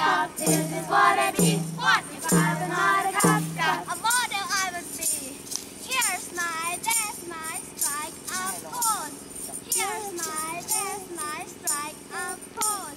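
A group of young voices singing and chanting a camp action song, with percussive strikes keeping a beat in the first few seconds. Then high, wavering vocal cries and laughter.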